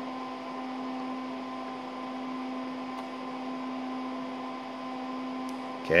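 Steady hum of a running DEC PDP-8/e minicomputer, its cooling fans and power supply giving a drone with one strong low tone, fainter overtones and airy fan noise. A faint click comes about halfway through.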